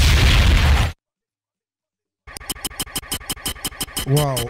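Sound effects in a dance routine's backing track: a loud, low rumbling noise that cuts off dead about a second in, followed by a second or so of total silence, then a fast rattling pulse of about seven beats a second.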